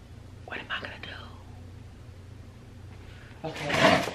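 A woman's breathy, whispered vocal sounds: a short sound falling in pitch about half a second in, then a loud breathy burst near the end, over a steady low room hum.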